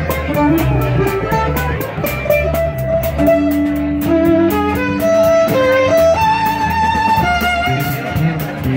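Live band playing a fast tune: a fiddle carries the melody over guitars, with a quick, steady beat.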